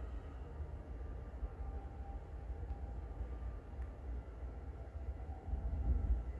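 Low, uneven rumble of background noise with no distinct event in it.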